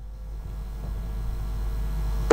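Steady low hum with faint hiss on an open telephone line, slowly growing louder.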